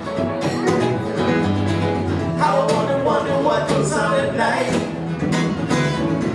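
Small live band playing a rock song: two acoustic guitars strummed over electric bass guitar and keyboard.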